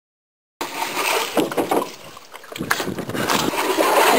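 After about half a second of silence at an edit, water splashing and sloshing around canoes, with knocks and clatter against a canoe hull.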